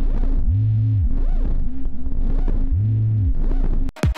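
Low synthesized drone with a wobbling pulse repeating about three times a second and two deep bass swells, cutting off abruptly just before the end: the sound bed of an animated logo ident.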